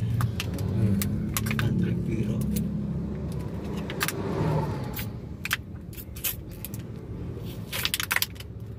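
Inside a moving car's cabin: irregular sharp clicks and light rattles over the steady low road and engine rumble. About four seconds in, a bus passes close alongside with a short rush of sound.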